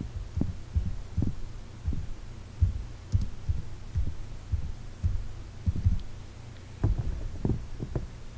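Computer keyboard keystrokes, about a dozen irregular dull thumps, over a steady low hum.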